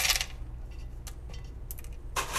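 LECA expanded-clay pebbles trickling into a plant pot, clicking and rattling against each other as they settle around the roots, with a brief louder rattle at the start and scattered light clicks after.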